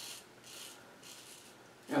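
Single-edge safety razor, a GEM Micromatic Clog Proof, scraping through lathered stubble on the cheek in a few short strokes about half a second apart.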